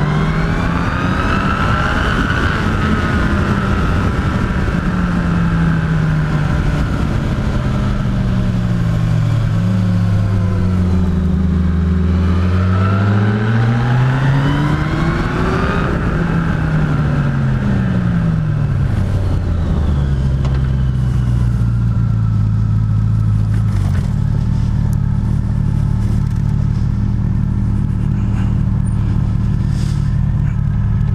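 Motorcycle inline-four engine of a Yamaha FJR1300 over wind rush, its pitch rising and falling twice as the bike accelerates and slows on a winding climb. It then settles into a steady low idle for the last ten seconds or so.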